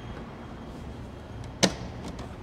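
A single sharp knock about one and a half seconds in, as a box is set down on a bare concrete floor.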